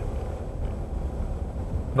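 Steady low rumble of a car driving slowly, engine and road noise heard from inside the cabin.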